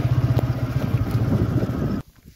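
TVS Apache motorcycle's single-cylinder engine running steadily under way, a fast even pulse, cutting off suddenly at the end.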